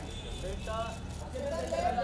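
Brief, fairly distant voices calling out, over a steady low background hum.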